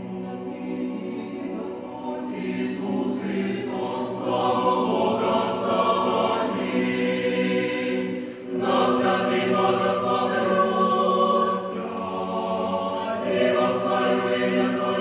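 Mixed choir singing a cappella in sustained chords. The chords swell louder from about four seconds in, break off briefly for a breath about eight and a half seconds in, then resume.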